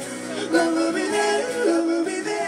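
Live pop performance: male voices singing a melody with long held, gliding notes over acoustic guitar strumming.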